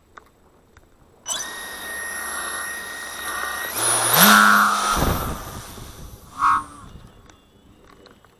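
Electric RC plane's propeller and roughly 3 kW motor running up at launch: a steady whine starts about a second in, steps up to full power near four seconds, then falls away and fades as the plane flies off, with a short louder burst near six and a half seconds.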